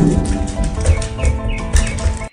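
Many tennis balls bouncing on a hardwood floor, a busy run of sharp knocks, over background music with held notes.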